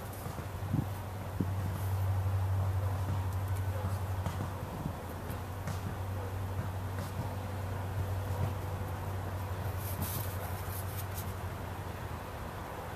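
A plastic spreader scraping and clicking as it mixes Bondo body filler on a cardboard palette and presses it into small holes in a golf cart's plastic dash panel. Under it runs a steady low hum.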